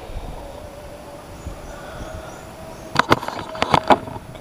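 Handling noise close to the microphone: a quick run of sharp clicks and knocks in the last second as a freshly caught small snakehead is held up by hand. Before it, a faint, wavering distant hum over steady outdoor background.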